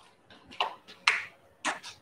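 A few short clicks and rustles from a plastic water bottle being handled and set down after a drink.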